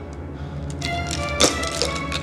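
Film score music with sustained low notes, overlaid by a few short sharp taps, the loudest about one and a half seconds in.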